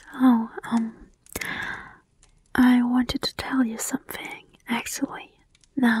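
A woman whispering close to the microphone in short, soft phrases.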